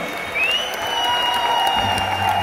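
Concert audience applauding, with a long high whistle rising and then held over the clapping.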